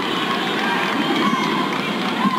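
Arena crowd shouting and cheering during a wrestling match, many voices at once with a few single shouts standing out.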